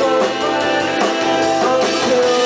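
Live indie rock band playing: electric guitars over a drum kit, the music running on steadily.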